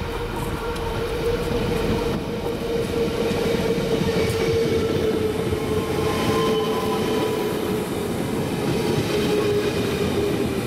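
NS double-deck electric train running close past along the platform. The rumble of its wheels on the rails grows louder over the first few seconds, under a steady whine that sinks slightly in pitch as it goes by.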